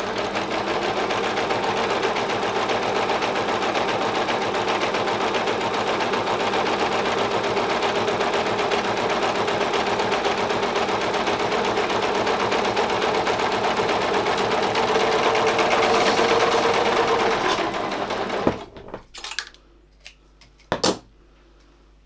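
Overlock machine (serger), its left needle removed for edge finishing, running steadily as it stitches and trims the edge of fine fabric backed with fusible interfacing. It stops about 18 seconds in, and two sharp clicks follow.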